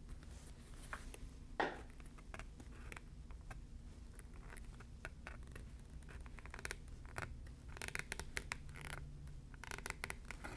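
Craft knife blade cutting through vegetable-tanned leather: faint scratchy ticks and scrapes as the blade is drawn along the cut line. There is a sharper click about one and a half seconds in and a denser run of scratching near the end.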